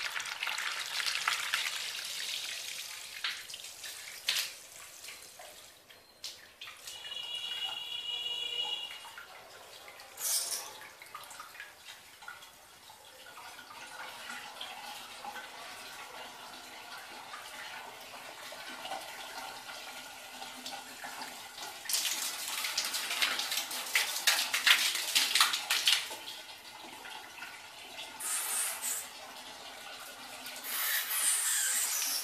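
A jet of water from a 24 V brushless micro DC pump splashing steadily onto a tiled floor. The splashing grows louder for a few seconds near the end.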